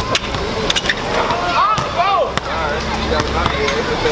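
Sharp knocks of a basketball on an outdoor asphalt court, with people calling out in drawn-out exclamations from about a second and a half in.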